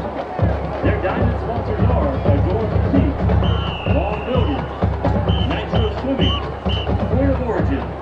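Marching band drums beat steadily under the chatter of a stadium crowd. About halfway through, a high note is held for about a second, followed by a few short high pips.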